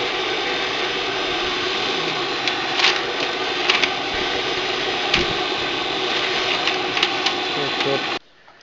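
Homemade extractor fan, a 27-volt DC motor driving an impeller inside a sewer-pipe adapter, running steadily with a rush of drawn-in air. A sheet of paper held at the intake rustles and crackles a few times as it is pulled toward the fan.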